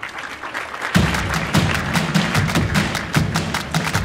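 Live band starting a song: a wash of audience applause, then about a second in the drums and bass guitar come in with a steady beat.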